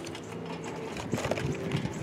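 Soft rustling and scattered small clicks of foil food pouches being packed by hand into a plastic bucket.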